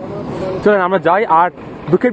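Speech: a person's voice says one short phrase in the middle, over low steady background noise.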